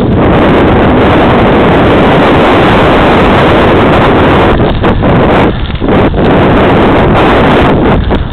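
Loud, steady wind buffeting the microphone of a camera moving fast down a path, dropping off briefly twice around five and six seconds in.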